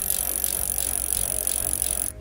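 A steady whirring sound effect with fast faint ticking, like a spinning wheel, stands in for the puzzle wheel turning. It starts and cuts off abruptly.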